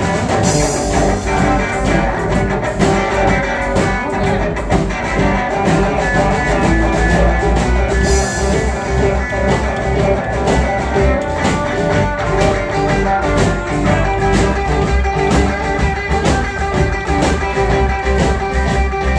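Live blues band playing an instrumental passage: an archtop electric guitar takes the lead over upright bass and drums, with a steady beat.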